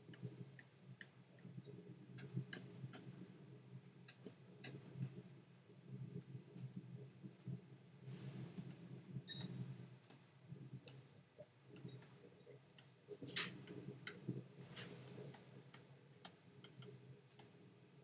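Faint, irregular clicks and taps from hands working a computer's drawing input while painting digitally, over a low steady hum. The clicks come thicker around the middle and again past two-thirds of the way through.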